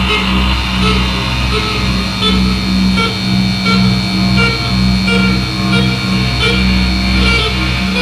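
Live electronic noise music played from iPad synth and looper apps: a pulsing low drone over a deep bass hum, with short electronic blips repeating about twice a second. A thin high tone is held through the middle and stops shortly before the end.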